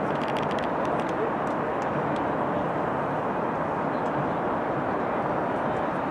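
Steady rushing outdoor noise across an open sports field, with a few faint clicks in the first second.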